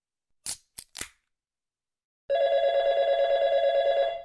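A beer can's ring-pull opening, a crack and fizz in three quick bursts within the first second. About two seconds in, a telephone ring tone starts, a steady fluttering tone that is louder than the can and runs until the call is picked up.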